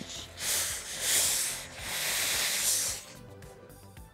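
Steam iron hissing in three surges of steam over about three seconds as it is pressed along a folded shirt hem, then falling quiet near the end.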